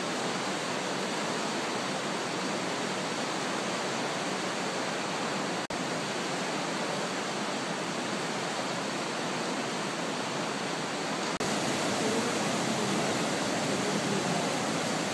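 The Brenta river in flood, its fast, muddy water rushing in a steady, unbroken noise. The sound cuts out for an instant twice, near six and eleven seconds in.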